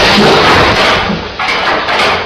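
Loud rushing noise from the soundtrack of an elevator's full-load, full-speed buffer test: a traction elevator with its safeties bypassed running down and crashing into the pit buffer. The noise drops for a moment about a second and a half in, then comes back briefly.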